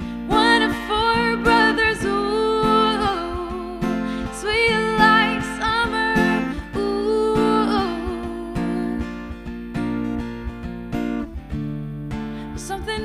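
A woman singing live to her own strummed acoustic guitar, an unaccompanied solo voice-and-guitar performance.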